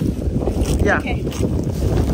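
Wind buffeting the microphone: a steady, loud low rumble, with a short voice heard about a second in.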